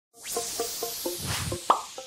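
Animated logo intro sting: a run of short pitched plops, about four a second, over a whooshing swell, capped near the end by one sharp bright ping that rings away.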